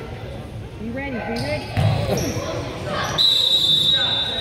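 A basketball bouncing on a gym floor amid shouting voices, then about three seconds in a referee's whistle blows one long, steady, shrill blast, the loudest sound here.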